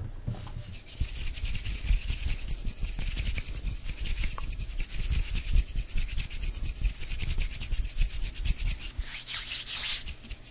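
Hands rubbing close to the microphone: a continuous, fast, dry skin-on-skin rasp with soft low thuds, louder from about a second in.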